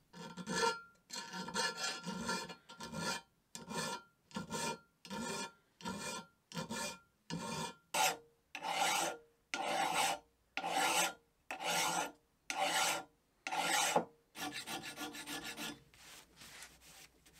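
Hand files rasping on metal lathe parts. First a thin round file makes quick short strokes, about two a second, along the cast lathe bed. Then a large flat file makes longer strokes, about one a second, on a part held in a vise, coming faster near the end.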